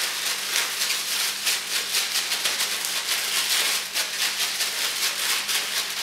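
Damp sand being shaken hard inside a plastic zip-top bag: a fast, steady rattle of several shakes a second, as a quarter teaspoon of water is worked evenly through a quarter cup of sand until it is just barely moist.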